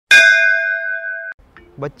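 A single metallic bell-like ding, an edited-in transition sound effect: struck once, it rings for a little over a second and then cuts off abruptly.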